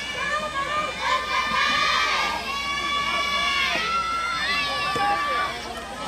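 Several high-pitched girls' voices shouting long, drawn-out cheering calls, overlapping one another, in the chanted style of soft tennis team support.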